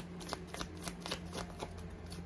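A deck of oracle cards shuffled by hand: a quick, irregular run of light card clicks and slaps.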